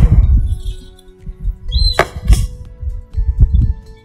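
Soft background music with loud, irregular low rumbling and a couple of sharp knocks as potting soil is pressed into a plastic plant pot with hands and a trowel; a short high chirp sounds about two seconds in.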